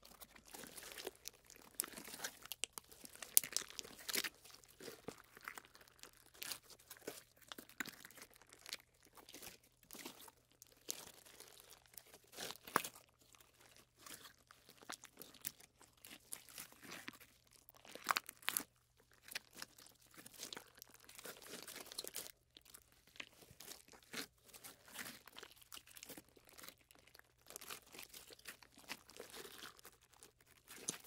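Slime being stretched and pulled apart, making irregular sticky crackles and small pops. A few pops stand out louder than the rest.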